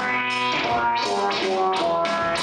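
Electric guitar driving a Sonicsmith Squaver P1 audio-controlled analog synth, the synth following the guitar's pitch in a stepping line of notes. Each note starts with a sharp attack, about two to three a second.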